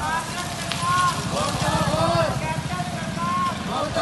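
A motorcycle engine passing close by on the street, strongest a little after the middle, with voices over it.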